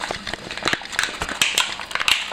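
Plastic blister pack of a diecast toy car being worked open by hand: an irregular run of sharp plastic clicks and crackles.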